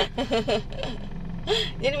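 Toyota Agya's engine idling with a steady low hum, heard from inside the cabin.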